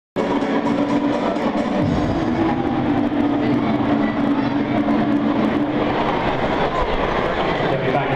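Din of a large football stadium crowd, many voices at once, cutting in suddenly at the start, with a held, chant-like pitch running through the first six seconds or so.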